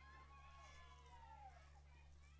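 Near silence: a steady low electrical hum, with faint distant high calls that slide down in pitch during the first second and a half.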